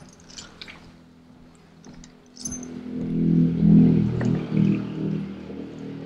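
A few soft clicks and rustles, then from about two and a half seconds in, music of sustained low chords that swells and then fades.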